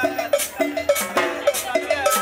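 A live band playing Latin dance music on accordion, upright bass and percussion. The hand percussion keeps a quick, even beat of about four strokes a second.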